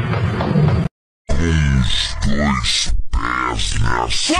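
A deep vocal grunt sound effect, heard three times, each one falling in pitch. It starts after a brief dropout to silence about a second in.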